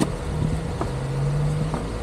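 An engine running steadily at low revs, with two light clicks about a second apart.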